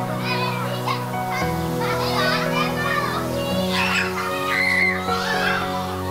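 Children's voices shouting and shrieking at play, over background music with long held chords that change twice.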